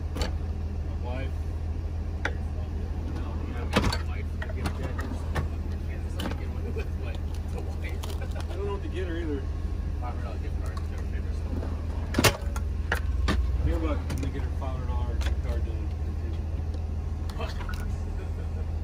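A steady low engine hum, like a vehicle idling, under faint voices, with two sharp knocks about four seconds in and again about twelve seconds in.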